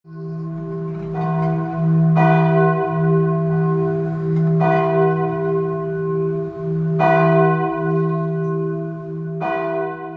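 Church bell tolling, struck about every two and a half seconds, with a couple of fainter strokes between. Each stroke rings on over a steady low hum.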